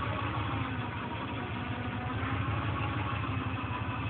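Engine of a modified off-road 4x4 idling steadily, a low even rumble.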